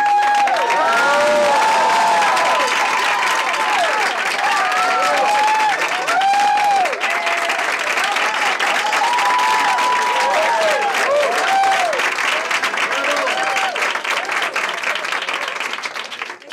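Audience applauding, with voices whooping in rising-and-falling calls over the clapping. It cuts off sharply at the very end.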